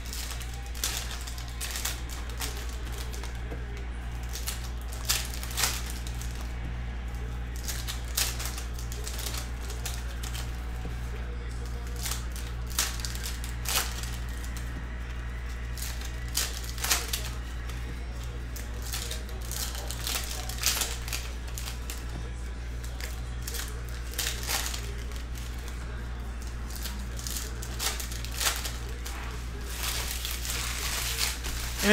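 Foil trading-card packs being torn open and the cards handled and flipped through by hand: irregular crinkles and sharp clicks scattered throughout, over a steady low hum.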